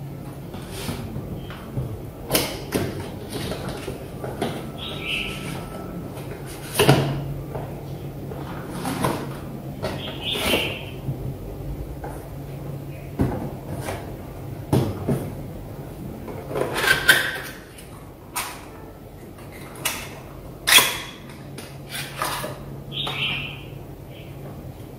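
A cardboard product box being unpacked by hand: the inner box slid out and lids lifted, with scattered irregular taps, scrapes and rustles of cardboard and packaging, over a steady low hum.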